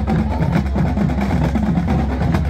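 Marching band playing: drums keep up a steady run of strokes over low sustained notes.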